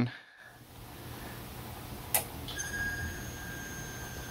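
About halfway through, a click, then an electronic fluorescent lamp ballast gives off a steady high-pitched ringing as it starts a worn lamp. The owner puts the ringing down to the worn lamp's arc voltage, probably very high at start-up, stressing the ballast a little.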